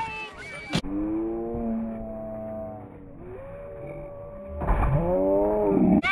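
A sharp knock, then a person's long drawn-out yell held for about two seconds. A rising call follows, then a loud, excited shout near the end.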